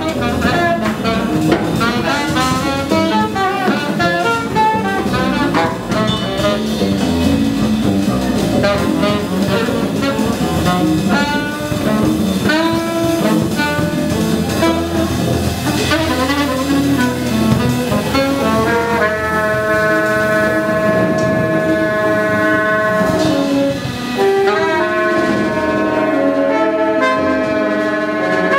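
A small jazz band playing live: a saxophone plays a busy, fast-moving line over walking double bass and a drum kit with cymbals. About two-thirds of the way through, the moving line gives way to long held horn notes.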